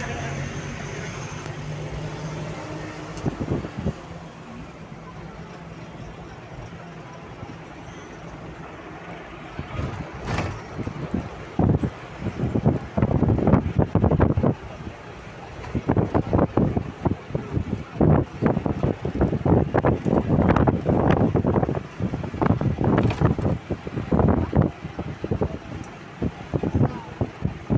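A road vehicle running with a steady low engine hum for the first few seconds. From about ten seconds in, wind buffets the phone's microphone in irregular loud gusts.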